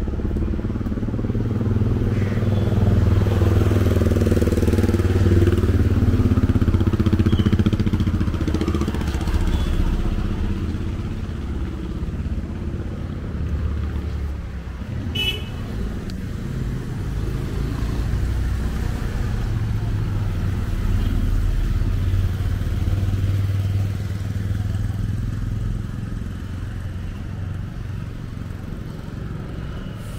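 Motor vehicles passing on a wet road, the engine rumble swelling twice: first a few seconds in, then again past the middle. A short high-pitched toot comes about halfway through.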